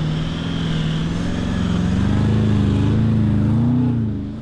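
A four-wheel drive's engine running under load, its pitch wavering and slowly rising, growing louder over the first two seconds.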